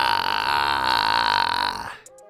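A man's long, drawn-out burp, low and buzzy, that stops abruptly near the end.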